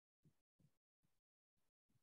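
Near silence: about five faint, short blips of low sound that cut in and out sharply, with dead silence between them.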